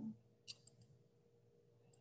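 Near silence: room tone, broken by one faint short click about half a second in and two fainter ticks just after.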